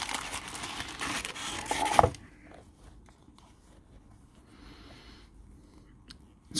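Tissue paper crinkling and rustling for about two seconds as a pipe in its soft cloth bag is lifted out of its packing, ending in one sharp click. After that there is only faint rustling.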